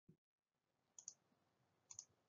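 Near silence with two faint double clicks about a second apart, from a computer mouse clicking through a slide presentation.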